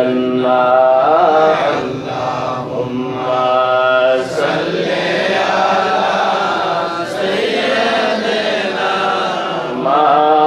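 A man's voice chanting devotional verses, amplified through a microphone, in long drawn-out held notes that bend slowly in pitch.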